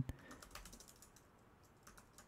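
Faint typing on a computer keyboard: a short run of quick keystrokes in the first second.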